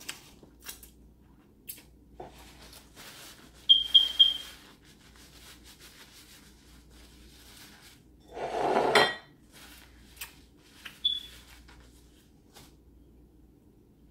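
Close-up eating and handling noises from a person eating fried chicken held in a paper napkin over a plate: scattered small clicks and taps, a quick run of three sharp clinks about four seconds in, and a louder rustle lasting about a second a little past the middle.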